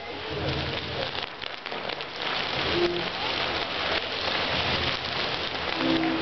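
Castillo firework tower burning: a dense, steady hiss of crackling sparks and fountains, thick with small pops, most noticeable between about one and two and a half seconds in.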